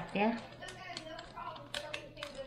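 Light, irregular clicks and rustles of fingers picking through a tub of wooden toothpicks, with the banana-leaf parcel faintly crinkling in the other hand.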